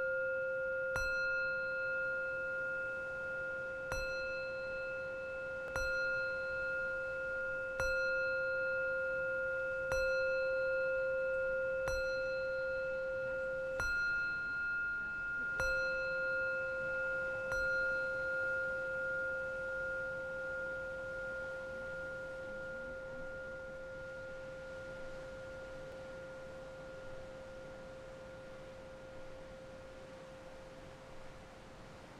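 Two metal singing bowls resting on a person's body, struck in turn with a wooden striker about every two seconds, with the tones sustained and overlapping. After about nine strikes the striking stops near the middle, and the bowls ring on and slowly fade.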